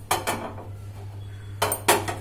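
A metal spoon clinking against a dish in a few short, ringing clinks: two near the start and two more about a second and a half in.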